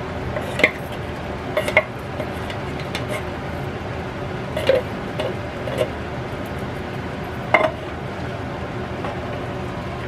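A few scattered clinks and knocks of a tin can and a spoon against an electric skillet as canned beans are emptied in, over a steady low background noise.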